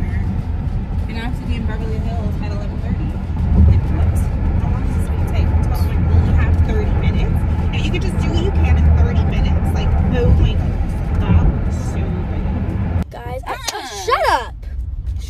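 Steady road and engine rumble inside a moving car's cabin, with faint voices and music underneath. About a second before the end the rumble stops abruptly, leaving a clearer voice.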